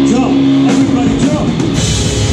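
Live rock band playing electric guitars, bass and drum kit, the sound filling out near the end.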